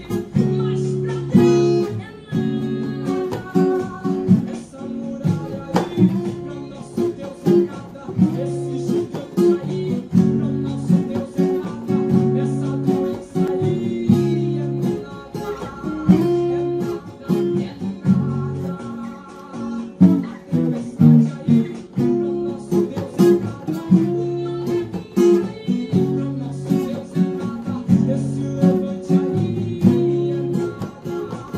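Steel-string Takamine acoustic guitar strummed up and down in a steady rhythm, playing minor and seventh chords of a worship song.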